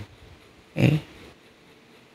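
A man's single short throaty vocal sound, about a second in, heard through a handheld microphone. The rest is quiet room tone.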